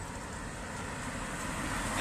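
Steady background noise, a low rumble with hiss, with no distinct events, growing slightly louder near the end.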